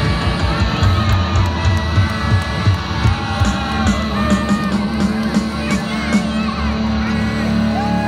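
Live band playing loud amplified rock music with singing, and a crowd yelling and whooping close around the microphone.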